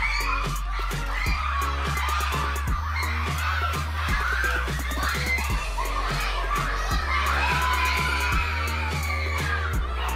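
Dance music with a heavy, steady bass beat, played loud, over a crowd of children shouting and screaming.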